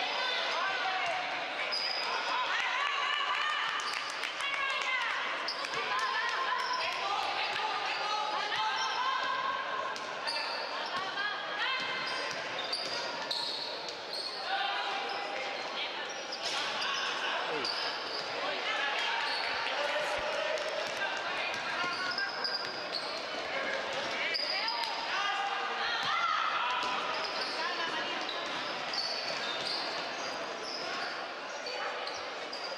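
Sounds of an indoor basketball game: the ball bouncing on the court, short high sneaker squeaks, and players and spectators calling and shouting, all echoing in a large sports hall.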